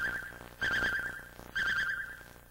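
Cartoon radar-screen beep: a high electronic tone with a fast flutter, sounding three times about a second apart, each one fading away.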